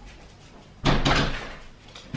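A door being shut: one loud, sudden bang about a second in that dies away within about half a second.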